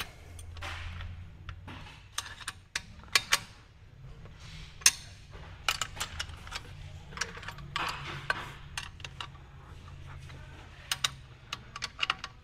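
Irregular sharp metallic clicks, clinks and knocks of tools and metal parts being handled while working a car's front suspension with a wheel fitment tool, with one sharper knock about five seconds in, over a faint low hum.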